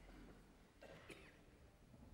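Near silence: concert-hall room tone between pieces, with one faint, brief sound about a second in.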